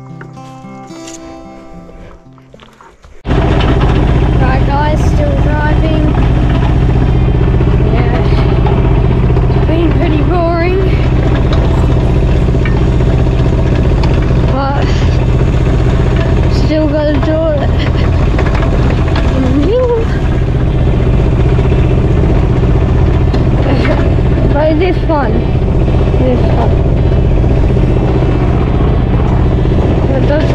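A metal detector's tones for the first few seconds, then, about three seconds in, a mini excavator's diesel engine running loud and steady, with a wavering higher whine rising and falling over it as the control levers are worked.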